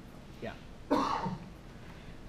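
A person coughing: a short cough about half a second in, then a louder one about a second in.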